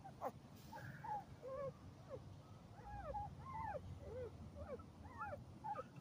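Two-week-old pit bull puppy squeaking and whimpering in a run of short, thin, rise-and-fall cries, about three a second.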